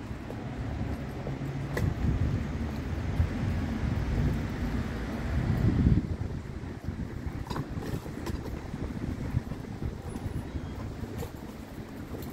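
Wind buffeting a phone microphone outdoors, a low rumbling noise over faint street background. It is loudest in the first half and drops off suddenly about halfway through.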